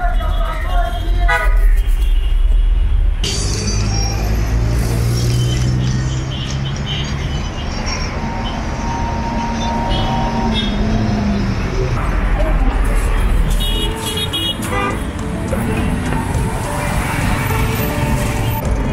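Busy city road traffic: engines and tyre rumble, with car horns honking, including one long horn blast about eight to eleven seconds in. It is heard first from inside a moving car's cabin.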